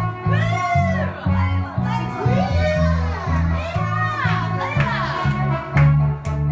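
Karaoke backing track playing loudly through a PA with a pulsing bass line, while a man sings into a microphone; the voice swoops up and down in long arcs over the music.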